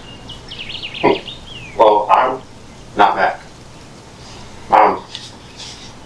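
Four short bursts of men's voices, brief words or exclamations, spaced about a second apart. A run of quick high chirping sounds comes in the first second and a half, under the voices.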